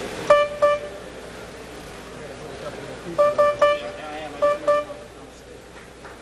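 Grand piano, one high note struck over and over in short groups: twice near the start, three times about three seconds in, then twice more. A key is being tested during a makeshift repair inside the piano.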